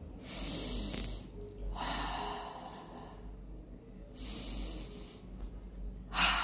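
A woman breathing deeply and audibly as a calming breathing exercise: three slow, hissing breaths of about a second each, with short pauses between.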